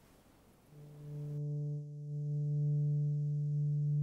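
Near silence at first, then a low, steady drone note of background music swells in about a second in and holds unchanged.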